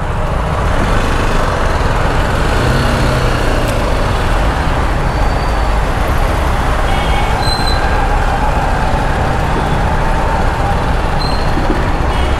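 BMW G310R motorcycle riding in traffic: a steady rush of wind and road noise on the microphone over the low rumble of the engine, building up over the first second and then holding steady.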